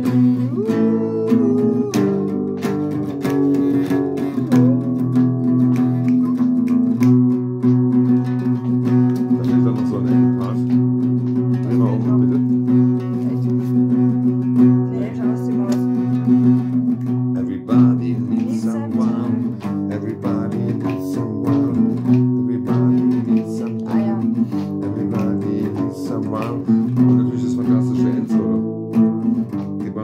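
Acoustic guitar strummed, with chords ringing on between strokes.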